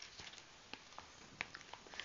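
Faint, scattered small clicks and wet mouth sounds of a baby mouthing and sucking on a plastic-coated bib.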